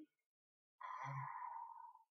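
A man's drawn-out breathy vocal sound effect, a hissing tone lasting just over a second, starting a little under a second in.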